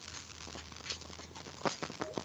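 Low, static-like crackling background noise on a video-call audio line, with a steady low hum and a couple of faint clicks.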